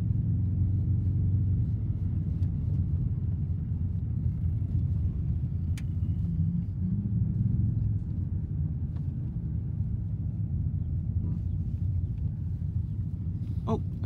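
Steady low rumble of a car's engine and tyres heard from inside the cabin while driving on an unpaved road, with a single light click about six seconds in.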